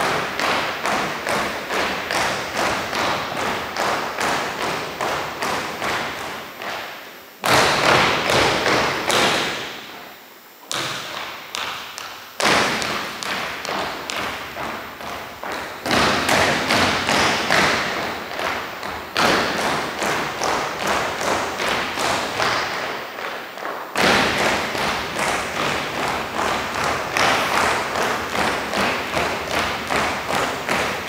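Unison footsteps of a rifle drill team stepping and stamping on a hardwood gym floor, about two sharp knocks a second, echoing in the hall. Louder accented stamps come at several points.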